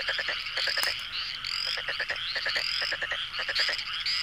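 Frogs calling: a rapid rattling croak with a high chirp, repeated in an even rhythm a little more often than once a second.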